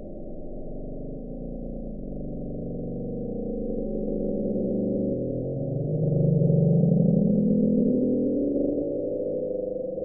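The Bloop: a 1997 hydrophone recording of a loud ultra-low-frequency underwater sound, played back sped up so it can be heard. It is a deep, layered drone that swells and rises in pitch, loudest about six seconds in with an upward sweep. Scientists attribute it to an icequake, ice cracking and breaking up in Antarctica.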